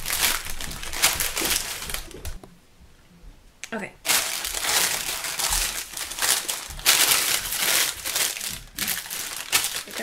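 Parchment paper crinkling and crumpling as it is pressed by hand into a ceramic bowl to line it, in repeated bursts with a pause of about a second and a half about two and a half seconds in.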